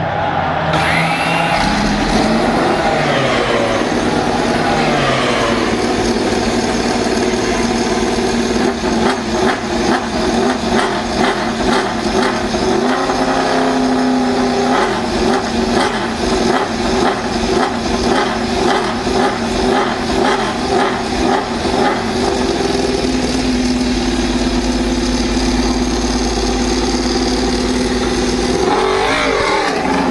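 Suzuki MotoGP bike's inline-four racing engine being started on a roller starter under the rear wheel: a rising whine as it spins up and catches. It then runs with the throttle blipped over and over, settles, and the revs rise near the end as the bike pulls away.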